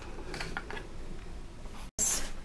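Faint handling sounds: a few light clicks and rustles as a lip crayon and its cardboard box are handled on a table, over low room noise. The sound drops out completely for a moment just before the end.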